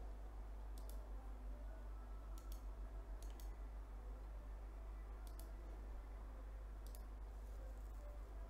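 Faint clicking at a computer as a link is posted into a chat: about six short, sharp clicks, several in quick pairs, spread irregularly over the seconds, with a low steady hum underneath.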